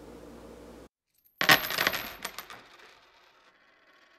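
Coins dropping onto a hard surface: a quick cluster of sharp metallic clinks with high ringing about one and a half seconds in, a few more clinks after it, dying away over the next second or so. A short stretch of faint room tone comes first, cut off abruptly.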